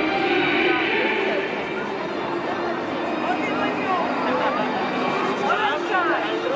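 Crowd chatter: many voices talking over one another, with faint music underneath.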